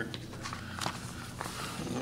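A few light knocks, about three in two seconds, over steady low room noise.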